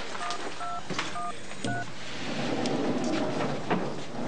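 Telephone keypad tones: four short two-note beeps about half a second apart as a number is dialled. They are followed by a steady, low, noisy hum.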